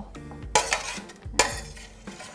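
Metal spoon scraping against a stainless steel roasting pan as roasted tomatoes in olive oil are scooped out, two scraping strokes just under a second apart.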